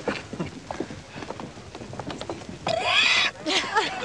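A person's voice: after a quieter stretch of faint small clicks, a brief high exclamation about three seconds in, its pitch rising and then falling.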